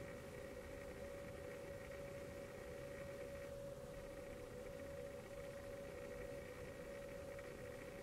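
Quiet room tone with a faint, steady electrical hum; no distinct sounds from the concealer being dabbed on.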